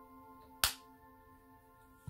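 Background music of steady held tones, with one sharp click about half a second in from the opened Samsung Galaxy S8+ being worked on by hand.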